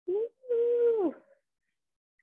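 A woman's wordless vocal sound of strain during a hard exercise: a short sound, then a held note of under a second that drops in pitch at its end.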